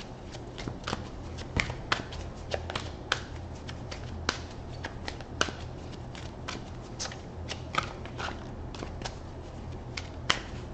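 A deck of tarot cards being shuffled by hand: irregular short clicks and flicks of card against card, one or two a second, over a steady low hum.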